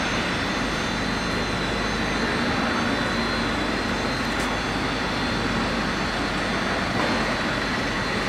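Steady mechanical running noise of workshop machinery, an even hum and hiss at constant level with a few faint high steady tones in it.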